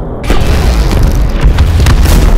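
Film explosion: a sudden loud blast about a quarter second in, heavy at the low end and carrying on, with sharper cracks near the end.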